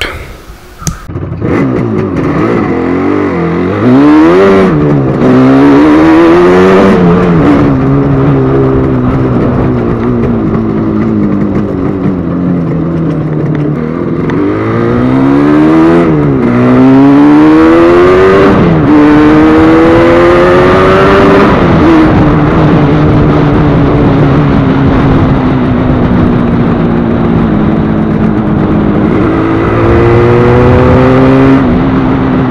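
Yamaha RD350's air-cooled parallel-twin two-stroke engine under way, climbing in pitch and dropping back at each gear change several times. It then runs fairly steadily at cruising speed before picking up again near the end.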